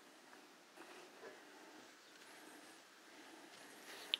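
Near silence: faint room tone, with a couple of faint soft ticks about a second in.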